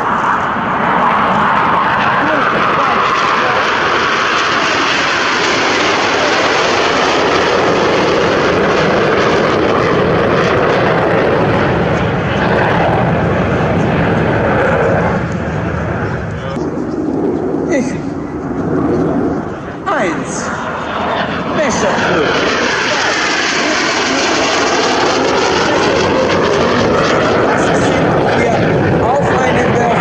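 Aermacchi MB-339 jet trainers, each with a single Rolls-Royce Viper turbojet, flying past in a display, giving a loud, continuous jet rush. After about twenty seconds the sound briefly thins, then sweeps up and down in pitch as a jet passes close by.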